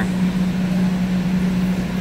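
A steady machine hum: one even low-pitched tone over a constant rushing noise, unchanged while the reach-in's compressor sits cycled off.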